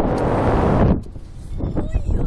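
Riders on a slingshot ride squealing over wind rushing past the microphone. A loud rush of noise fills about the first second, then it drops to quieter wind with short high squeals near the end.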